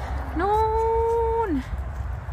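A woman's voice holding one long, drawn-out word at a steady pitch for about a second, over a low steady rumble of wind on the microphone.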